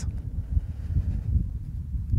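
Low, gusty rumble of wind buffeting the microphone, rising and falling, with no clear separate event.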